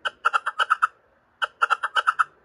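An animal call: two quick runs of sharp, pitched chirps, about eight a second, with a short pause between the runs.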